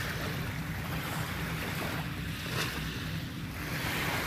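Small Lake Erie waves lapping and washing up on a gravelly shoreline, with a steady low rumble of wind on the microphone.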